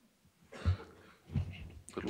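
Two short throat sounds from a man, not words, the first a little before a second in and the second about half a second later.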